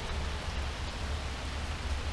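Steady background noise with a low rumble underneath and no distinct events.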